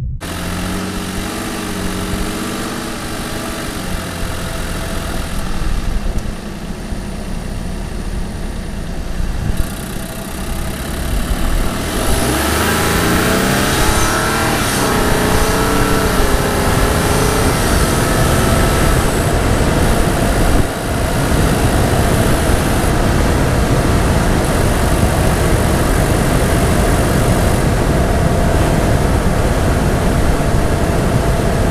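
The twin-turbo V6 of a 2022 Toyota Tundra TRD Pro, heard from a microphone under the hood with the stock air filter in normal drive mode. It runs at low speed for about the first twelve seconds, then accelerates with a rising pitch and grows louder, and keeps running steadily at that louder level to the end.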